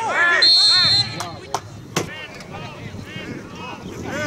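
Referee's whistle: one shrill, steady blast about half a second in, lasting about half a second, blown for a foul in the penalty area. Players' raised voices shout around it, with a few sharp knocks.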